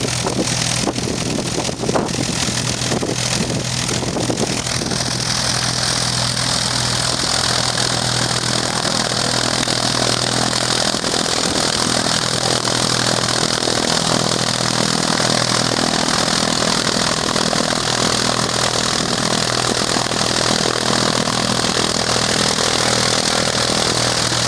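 Piston engine and propeller of a Cessna high-wing single-engine light aircraft running steadily on the ground before take-off, with a hiss that grows louder about five seconds in and then holds.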